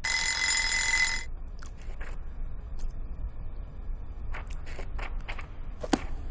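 A bright, rapid bell rings loudly, like an alarm clock, for just over a second and then stops abruptly. Soft scattered taps and rustles follow.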